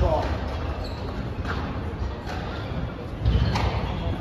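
Squash rally: sharp knocks of the racket striking the ball and the ball hitting the walls of a glass court, roughly a second apart, with a louder thump a little past three seconds in. Spectators chatter in the background.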